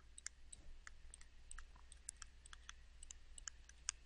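Faint, irregular clicks of a stylus tapping on a tablet screen during handwriting.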